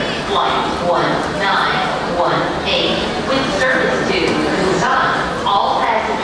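People's voices talking in a busy airport terminal concourse, steady throughout.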